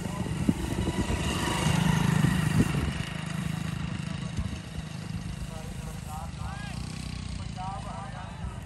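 A motorcycle engine running steadily, loudest a second or two in. Men's voices call out near the end.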